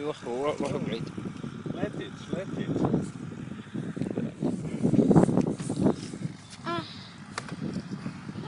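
Several people talking, loudest about five seconds in.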